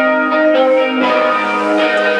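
Electric guitar drenched in reverb, playing slow, sustained notes that ring like bells, heard live from the floor of a small club.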